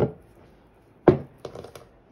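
Two sharp knocks of small objects being set down or handled on a wooden tabletop, about a second apart, the second one louder, followed by a few light clicks.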